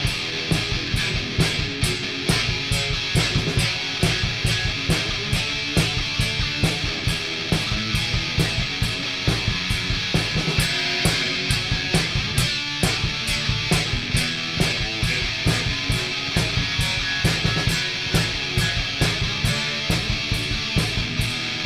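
Heavy rock music with guitar and a fast, steady drum beat, with no singing.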